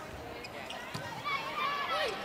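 Volleyball rally in an indoor arena: faint thuds of the ball being served and passed, over a low murmur of crowd voices.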